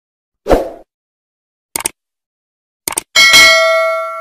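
Subscribe-button animation sound effects: a short thump about half a second in, then two quick double clicks about a second apart. A bell ding follows at about three seconds and rings on, slowly fading.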